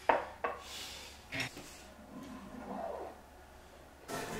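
Crockery clatter: a ceramic coffee cup and a metal milk-frother jug knocked and set down on a stone worktop, with three sharp clinks in the first second and a half, then softer handling sounds.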